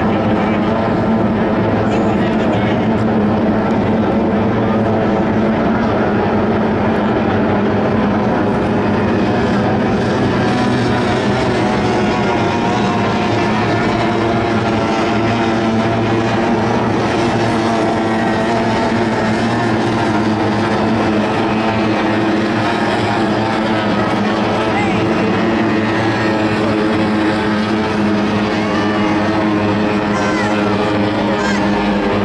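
Outboard engines of several tunnel-hull racing powerboats running at race speed together, a steady, dense engine drone with no let-up.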